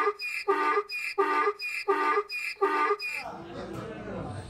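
Donkey braying: a quick run of about seven short, evenly spaced calls, roughly two a second, that stops about three seconds in.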